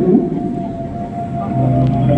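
Orchestral music: sustained held notes, with a sliding, gliding melodic line just at the start, between sung phrases.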